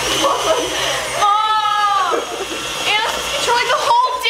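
Girls' voices shrieking and laughing without words, with one long drawn-out wavering squeal about a second in. Underneath is the faint steady hum of an electric stand mixer running.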